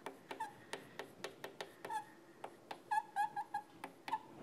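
Chalk writing on a blackboard: a string of quick taps and scrapes as the letters are stroked out, with a few short chalk squeaks, most of them about three seconds in.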